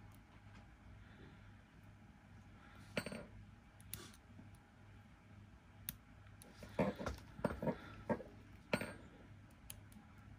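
Light metallic clicks and clinks as multimeter probe tips are pressed against AA battery terminals and the batteries are knocked together and shifted about: single clicks about three, four and nine seconds in, and a quick cluster around seven to eight seconds.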